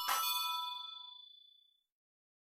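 A bell-like ding rings out at the end of an electronic music sting and fades away over about a second and a half.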